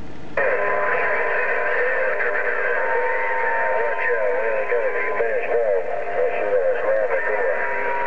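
Received radio audio from a President HR2510 transceiver's speaker, opening about half a second in: thin, narrow-sounding garbled voices with a steady whistle and crackle over them, typical of several distant stations heard at once on the 11-metre band.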